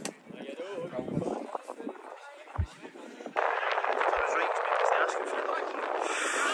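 Faint distant voices outdoors with a couple of soft low thumps. About three seconds in, this switches abruptly to a louder, steady rushing noise.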